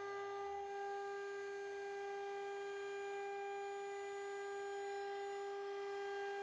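CNC router spindle fitted with a 90-degree V-bit, spinning up to speed with a steady, even-pitched hum and no cutting noise.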